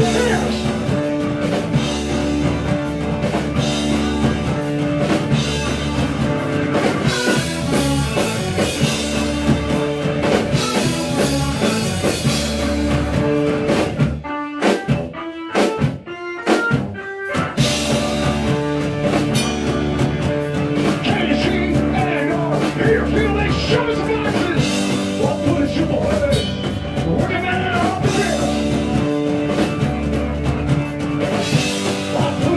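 Live rock trio playing an instrumental passage: electric bass, drum kit and organ. About halfway through, the band stops for a few seconds, leaving only a few sharp accented hits, then comes back in full.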